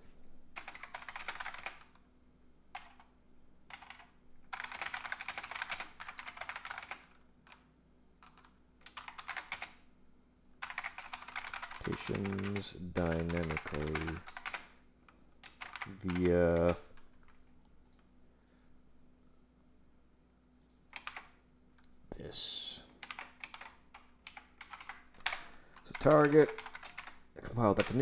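Typing on a computer keyboard in several flurries of a few seconds each, with pauses between them. Brief low voice sounds without clear words come in a few times between the flurries.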